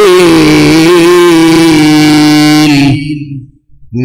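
A man's voice chanting Arabic through a PA microphone, holding one long drawn-out note that wavers slightly at first and trails off about three seconds in. A new chanted phrase begins at the very end.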